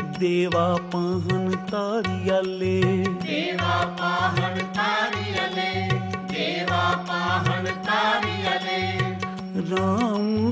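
Devotional kirtan music in an instrumental passage: a steady held drone under a gliding melody line, with a regular hand-drum beat about twice a second.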